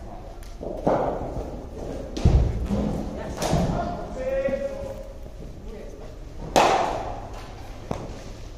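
Sharp knocks and heavy thuds of a cricket ball in an indoor net, struck by the bat and hitting the turf and netting, echoing in a large hall. A heavy low thud comes a little after two seconds, and the sharpest, loudest crack comes late.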